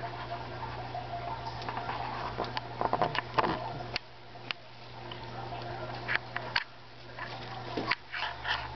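Soft rustling of leaves and handling clicks over a steady low hum, as a hand touches the plants and the camera moves along the rack.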